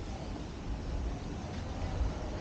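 Steady outdoor background noise with an uneven low rumble, as heard while walking through an open-air shopping center.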